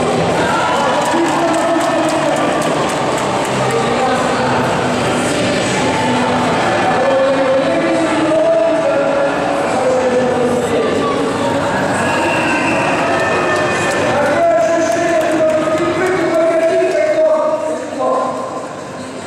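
Ice hockey arena crowd noise mixed with music and a voice over the public-address system, running steadily.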